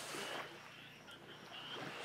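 A pause in speech: faint steady background hiss, with a brief soft rush of noise in the first half-second.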